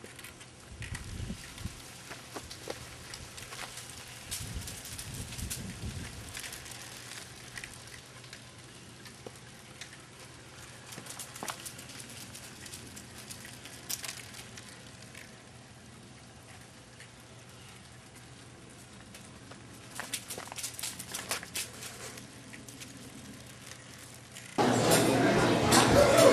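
Light, scattered crackling and crunching of a small child's bicycle tyres rolling over a driveway strewn with grit and dry leaves, with a couple of low rumbles about a second in and around five seconds in.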